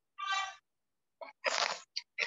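Short vocal sounds from a person over a video call: a brief pitched sound, then about a second later a short breathy burst.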